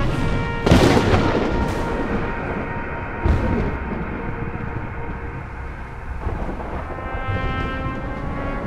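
Film soundtrack of a storm: held orchestral music under thunderclaps, with a loud crash of thunder under a second in and a smaller crack a little past three seconds. Near the end the music swells into a sustained chord.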